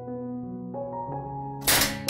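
Spring-loaded door of a wire-mesh cage mouse trap snapping shut near the end, a single sudden loud snap, as the poked trigger releases the latch. Soft piano music plays throughout.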